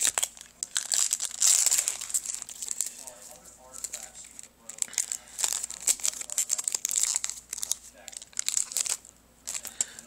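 Trading-card booster pack and plastic blister packaging crinkling and being torn open by hand, in repeated irregular bursts of crackling.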